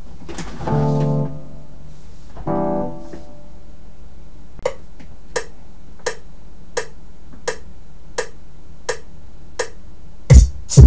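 Two short keyboard chords played through FL Studio, then a run of sharp, evenly spaced clicks, about one and a half a second, like a tempo click, over a steady low background hum.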